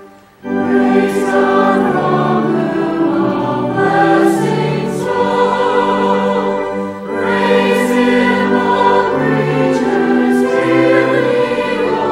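Church choir singing a hymn, coming in about half a second in after a short dip in the sound.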